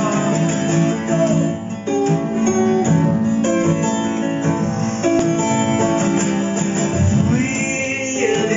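Steel-string acoustic guitar played solo in an instrumental passage of a song, chords and single notes changing every fraction of a second.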